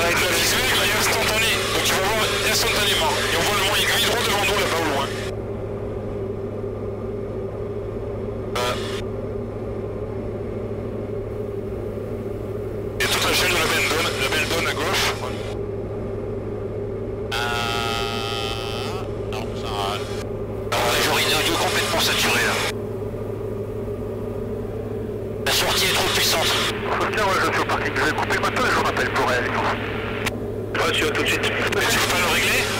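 Steady low drone of a Diamond DA40's engine and propeller inside the cockpit. Over it come several hissy stretches of radio chatter, each a few seconds long.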